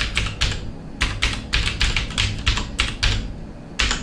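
Typing on a computer keyboard: a quick, uneven run of about fifteen keystrokes, with a short pause near the end.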